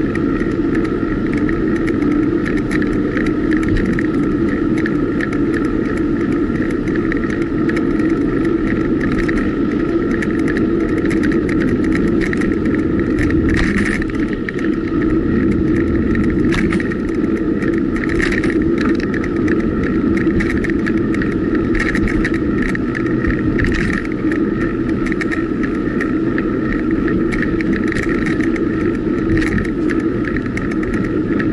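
Steady rushing noise of a road bike in motion, wind and tyre noise picked up by the bike's camera, with scattered sharp clicks and rattles, most of them in the middle of the stretch.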